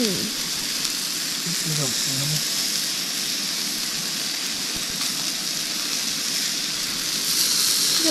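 Steak sizzling steadily on a camp stove griddle.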